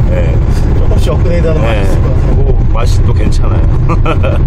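Steady low rumble of road and engine noise inside a Daewoo Rezzo's cabin at highway speed, running on LPG. A voice talks over it in short stretches.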